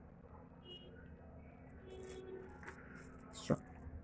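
Faint handling of faceted plastic glass-substitute beads and clear thread during hand beadwork, with one sharp bead click about three and a half seconds in.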